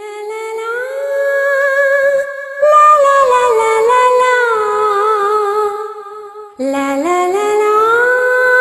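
Wordless humming of a slow melody: long held, gliding notes with vibrato, in two phrases, the second starting lower and rising, as the intro of a romantic song.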